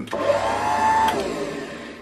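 Electric motor of a power hone running briefly: a whine rises in pitch as it spins up, cuts off about halfway through, and the hum fades away.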